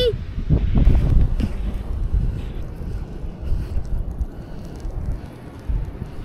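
Wind buffeting the camera microphone, a low rumble that is strongest in the first couple of seconds and then eases off.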